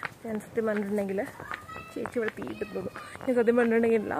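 A cat meowing a couple of times around the middle, over a woman talking.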